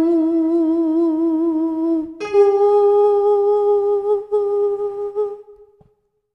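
A single alto voice sings the closing "ooh" of the alto line with vibrato. It holds one note, steps up to a higher held note about two seconds in, and fades out near the end.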